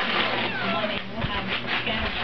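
Gift wrapping paper crinkling and tearing as a present is unwrapped, with a television voice talking in the background.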